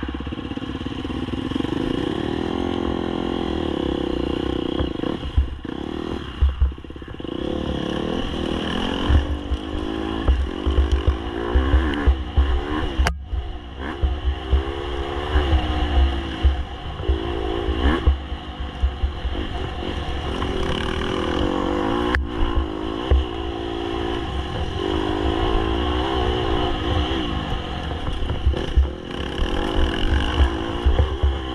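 Dirt bike engine being ridden hard, its pitch rising and falling as the throttle opens and closes, with two brief sharp drops, one about midway and one later.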